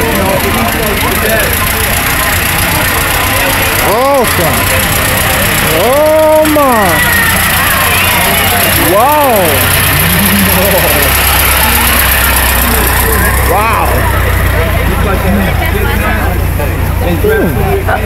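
An antique touring car's horn sounding a rising-then-falling "ahooga" about four times while the car's engine runs as it passes, with voices around it.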